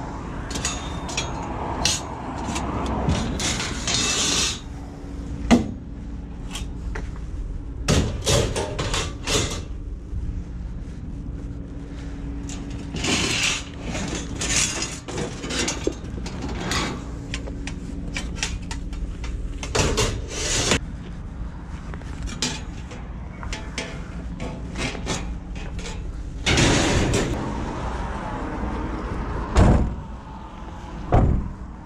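Steel slotted-angle shelving frame rattling and clanking as it is picked up and handled, with many sharp metal knocks throughout.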